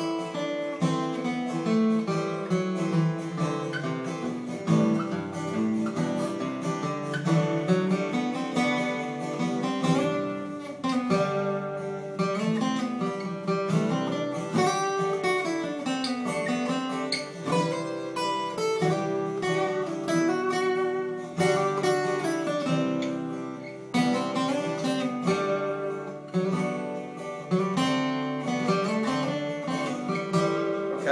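Steel-string acoustic guitar playing single-note scale runs up the neck in the second position, walking down over a repeating chord progression in G.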